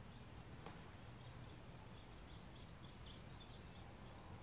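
Near silence: faint outdoor room tone with a soft bird chirp repeating about three times a second.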